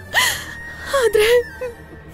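A woman sobbing: a sharp gasping breath just after the start, then a wavering, crying whimper about a second in.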